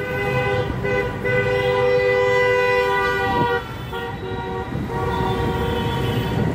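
Vehicle horn blaring in road traffic, two tones sounding together: one long blast lasting about three seconds that stops, then another starting about a second and a half later, over the rumble of passing traffic.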